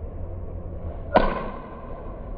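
Golf club striking a ball off a driving-range hitting mat: one sharp crack about a second in, with a brief ring fading after it.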